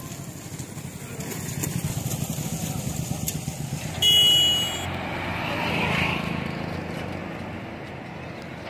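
Road traffic. A small engine runs with a low, rapid pulsing, then a short horn beep sounds about four seconds in, the loudest sound. An auto-rickshaw then passes close by, its sound swelling and fading away.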